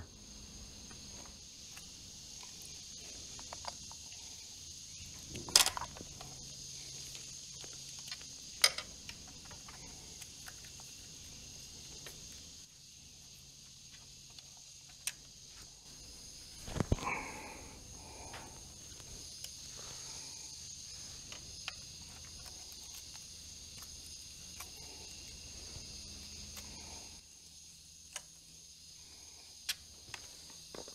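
Occasional sharp clicks and light metal knocks of an Allen key working the 5 mm bolts on the oil-line clip of a motorcycle engine, with a longer clatter about 17 seconds in, over a steady faint high hiss.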